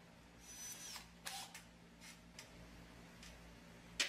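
Faint handling noises from a wire horse armature being lined up on a wooden board: a short scrape with a thin squeak, then a sharper scrape, then a few light clicks and taps.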